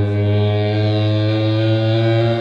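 Distorted electric guitar holding one long, low sustained note, its overtones ringing steadily with no other instruments heard.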